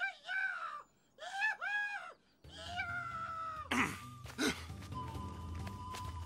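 A few high, wavering cries with a whining, animal-like sound in the first two seconds, then dramatic background music with a low drone, two steep downward swoops and a long held high note.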